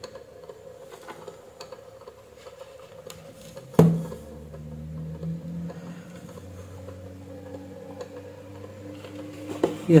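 Small clicks and taps of a soldering iron and thin wires being handled at a relay's terminals, with one louder knock about four seconds in, followed by a faint low hum.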